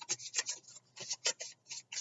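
A deck of Moonology oracle cards being shuffled by hand: a quick run of short, papery card slaps and rubs, about five a second, with a brief pause under a second in.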